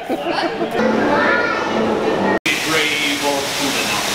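Echoing chatter of a crowd with children's voices, then a sudden cut to a steady hiss of falling water from a mist-curtain waterfall screen on a dark boat ride.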